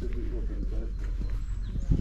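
Footsteps on asphalt over a steady low rumble of wind on the microphone, with faint voices early on and a heavier thump at the very end.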